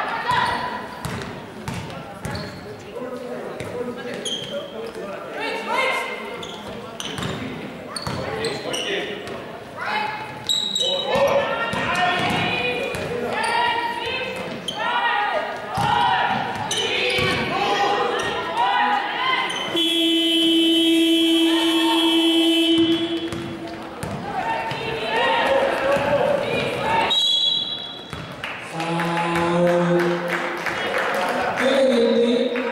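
A basketball bouncing on a sports-hall floor during live play, with players shouting to each other. About twenty seconds in, the electronic shot-clock buzzer sounds steadily for about three seconds as the shot clock runs out.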